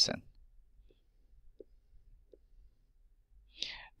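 Mostly near silence with three faint, short ticks of a stylus on an interactive whiteboard as digits are written, then a brief breath in.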